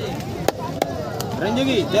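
A long knife cutting a trevally on a wooden chopping block, with sharp chopping knocks about half a second and just under a second in and a fainter one soon after.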